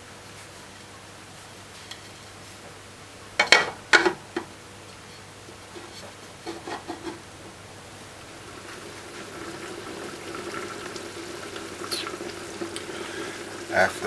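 Oxtail and butter-bean stew simmering in a covered aluminium pot on a gas flame, growing louder in the second half. Two sharp knocks about three and a half and four seconds in.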